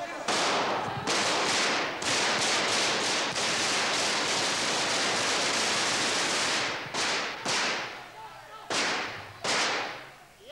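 Automatic gunfire from the Civil Guards' guns inside a parliament chamber. A few short bursts come first, then a long unbroken burst of about three seconds, then four more short bursts near the end. The shots are fired at the ceiling to frighten, not to kill.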